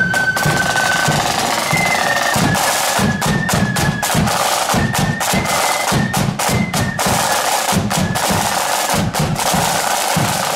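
Marching flute band's side drums playing rolls and a steady beat, with a bass drum beneath. A held flute note ends about a second in, and only short flute fragments follow.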